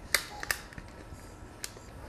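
Igniter button of a Bernzomatic butane torch clicking three times, twice in quick succession and once more near the end, as the torch is tried for lighting; it sometimes takes two or three clicks to fire up.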